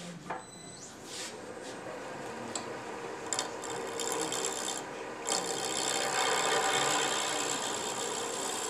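A turning tool cutting a walnut blank spinning on a wood lathe, a steady scraping hiss that builds about a second in and breaks off briefly around the middle as the tool is lifted. This is shaping cut on the shaker body, near the final profile.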